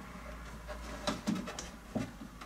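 Rubber-and-plastic window seal on a car door being pulled off by hand: quiet scraping with a few light clicks, mostly in the second half.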